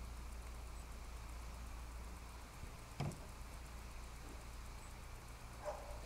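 Quiet outdoor ambience with a steady low drone from a lawn mower far off. A stemmed beer glass is set down on a table with a single sharp knock about halfway through, and faint dog barks come from a distance near the end.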